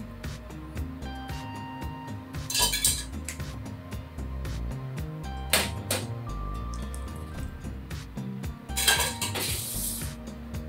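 Stainless steel kitchenware clinking and scraping: a few short knocks of the metal sieve and utensils against the steel pot and bowl while sauce is strained, about three seconds apart, over quiet background music.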